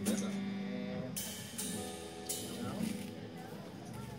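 Quiet, loose guitar and bass notes played between songs, with a low note held for about the first second. Two brief bursts of hiss come in the middle.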